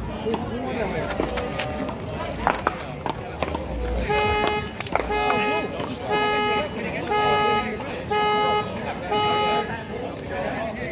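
A vehicle horn sounding in a series of short, evenly spaced honks, about one a second, starting about four seconds in. Before it there are a few sharp smacks of a paddleball being hit.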